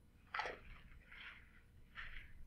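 A person drinking water from a bottle: a short, sudden sip or swallow sound about a third of a second in, followed by soft breathy noise, all faint.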